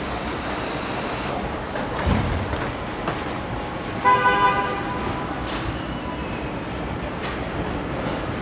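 A short horn toot, a single pitched blast lasting under a second about halfway through, over a steady hum of factory noise, with a low thump about two seconds in.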